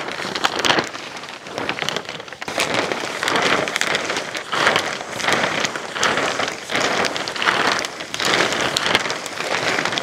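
A large sheet of 6 mil polyethylene plastic rustling and crinkling as it is pulled and spread out, in repeated surges of crackly noise.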